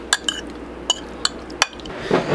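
A utensil clinking against a glass bowl while raw fish cubes are stirred, about five sharp clinks with a short ring.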